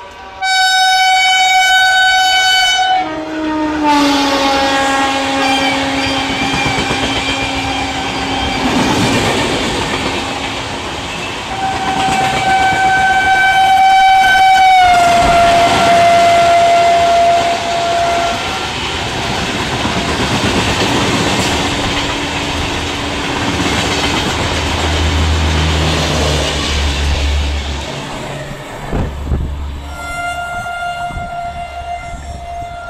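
Two electric trains running through a station at speed on parallel tracks: a MEMU electric multiple unit and an LHB express hauled by a WAG-7 electric locomotive. A high horn sounds about a second in, then a lower horn whose pitch drops as it passes. About twelve seconds in a long high horn sounds, its pitch falling as it goes by. Throughout, the coaches rush past with wheels clattering over the rail joints, and a low hum rises near the end.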